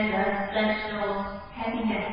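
A voice reciting in a slow, chant-like intonation with drawn-out, held tones, in two phrases with a short break about one and a half seconds in.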